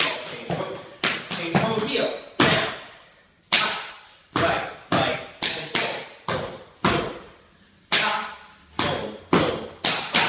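Tap dance steps on a hardwood studio floor: an uneven run of sharp taps and heavier stomps, each ringing out in the large, echoing room, with gaps between the phrases around three and eight seconds in.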